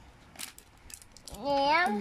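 Faint, scattered clicks of a small plastic container being handled and pried at by hand, then a voice calls out briefly near the end with a rising and falling pitch.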